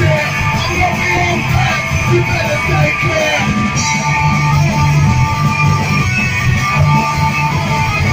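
Live rock band playing loudly: electric guitar over drums, heard from the audience.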